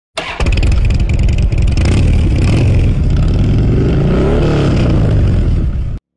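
Motorcycle engine running loudly, with one rev whose pitch rises and falls about four seconds in. The sound cuts off suddenly at the end.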